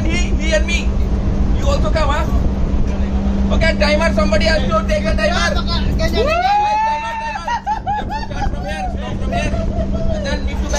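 Several men's voices talking and calling out, with one long drawn-out shout about six seconds in, over a steady low hum.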